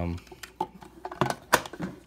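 Plastic clicks from a DX Ryu Buckle toy belt buckle being handled, ending in a sharp snap about one and a half seconds in as its hinged front cover is pushed shut.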